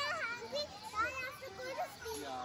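Young children's high-pitched voices talking and calling out.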